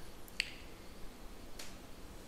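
Two short, sharp clicks about a second apart, the first louder, over faint room tone.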